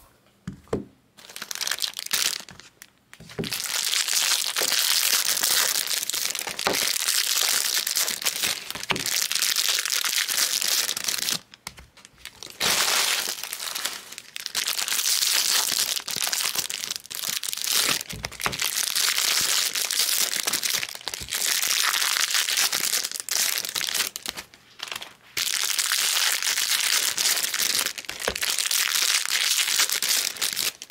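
Foil wrappers of 2022 Bowman Draft Jumbo card packs being torn open and crinkled. The crinkling runs in long stretches broken by short pauses.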